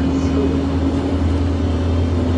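Steady low drone of a bus's engine and running gear, heard from inside the cabin at the back seats.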